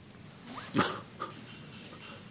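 A man's brief laugh about half a second in, then quiet room tone.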